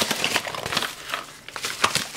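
A padded mailing envelope and its plastic packaging rustling and crinkling as they are opened by hand: a dense run of small crackles and clicks.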